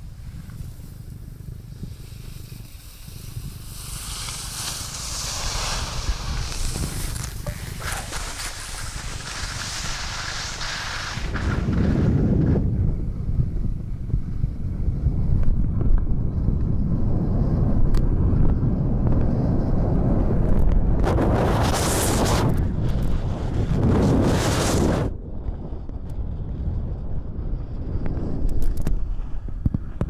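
Wind buffeting the microphone of a camera carried by a skier going downhill, with the hiss and scrape of skis on hard-packed snow that swells and fades with the turns. The wind rumble gets heavier about eleven seconds in.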